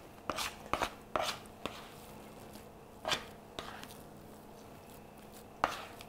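Plastic bench scraper scraping and knocking on a wooden cutting board while gathering and folding soft, sticky sweet-bread dough: about six short, unevenly spaced scrapes and taps.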